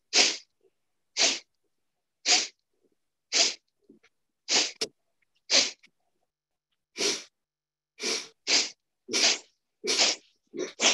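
Sharp, forceful exhalations through the nose, about one a second and a little quicker near the end: a yogic breathing exercise of the kapalabhati kind.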